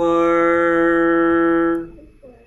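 A man's voice holding one steady drawn-out note for nearly two seconds, then stopping abruptly.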